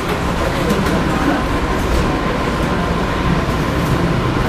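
Steady rumbling background noise, with faint scratches of chalk on a blackboard as lines are drawn.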